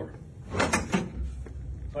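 A metal-legged classroom chair being pulled free from where its back leg is wedged in a door, its legs knocking against the door: a few sharp clattering knocks about half a second to a second in.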